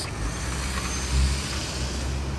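Road traffic at an intersection: cars driving past with a steady low rumble of engines and tyres.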